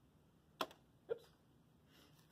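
Quiet room tone broken by a sharp small click about half a second in, then a short throaty blip about half a second later, as a glue stick and tissue paper are handled on a tabletop.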